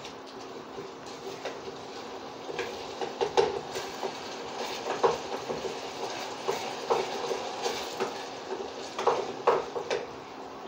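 A spoon scraping and knocking against a metal saucepan as frying onions are stirred, in irregular clinks throughout.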